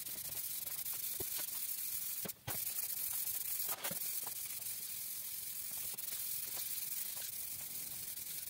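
Aerosol spray can hissing steadily as red paint is sprayed onto a motorcycle fuel tank, laying on the second coat. The spray stops briefly about two and a half seconds in.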